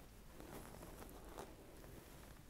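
Near silence: room tone with a couple of faint, soft handling noises, about half a second and a second and a half in.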